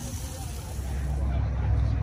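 A vehicle engine running close by, a low rumble that swells about a second in.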